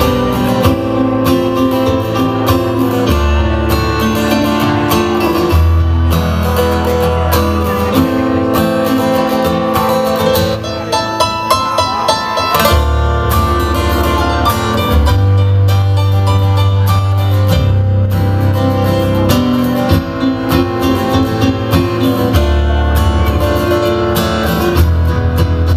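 Live acoustic guitar strumming with a Yamaha keyboard playing chords and low bass notes, in an instrumental passage of a slow pop song; the sound thins out briefly about ten seconds in.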